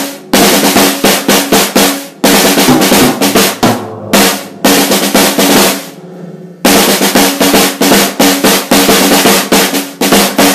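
An acoustic drum kit played fast and loud, mostly on the snare drum, in rapid strokes and rolls with bass drum under them. The playing breaks off briefly a few times, with a longer lull about six seconds in where a drum rings out, then starts again.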